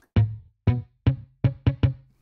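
Short muted electric-bass notes from the UJAM Virtual Bassist Rowdy plugin, played on a MIDI keyboard: about six low plucks, each dying away quickly, coming closer together near the end.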